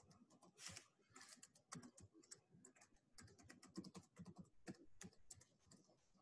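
Faint typing on a computer keyboard: irregular key clicks, several a second, in uneven runs.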